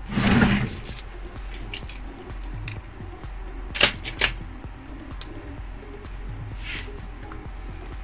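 Faint background music under a few sharp metallic clicks and clinks, the loudest two close together about four seconds in: a metal twist-lock bag clasp being handled and set against a fabric-strip crochet bag.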